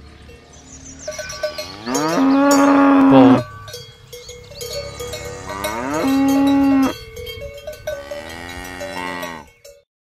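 A bull mooing three times: long calls that rise in pitch and then hold steady, the first the loudest. Cowbells clank throughout.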